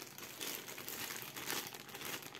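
Clear plastic packaging bag crinkling as it is handled, an irregular crackle with a few louder crinkles.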